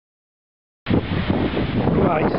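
Dead silence, then a little under a second in, wind buffeting the microphone of a handheld camera starts abruptly and runs on loud and rough.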